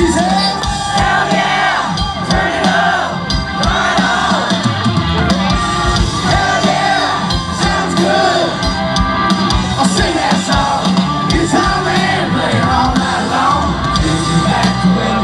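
Live country-rock band playing loudly, with a sung lead vocal over guitars, bass and drums.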